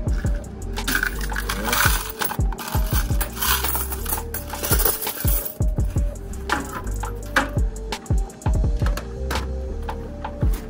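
Coins clinking and rattling in a vending machine's metal cash box as they are tipped out into a cash bag, in many quick clicks. Background music with a steady beat runs underneath.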